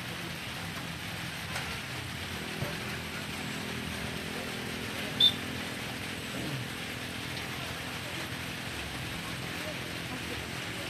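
Outdoor ambience of faint, distant player voices over a steady background hiss and low hum, with one short, sharp high-pitched chirp about five seconds in that stands out as the loudest sound.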